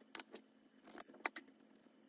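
A few light clicks and small rattles, about five in two seconds, like hard plastic fridge parts being handled.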